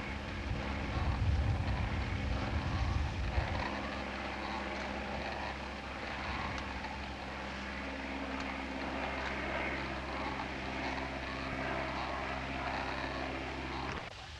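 Light spotter plane's propeller engine droning steadily, with a heavier low rumble for the first few seconds that then drops away.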